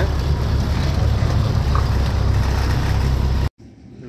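Truck diesel engine running with a steady deep rumble, heard from inside the cab as the truck drives slowly onto a weighbridge. The engine sound cuts off abruptly near the end.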